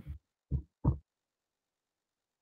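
Two short, dull thumps about a third of a second apart, then dead digital silence: the video-call microphone has been switched off.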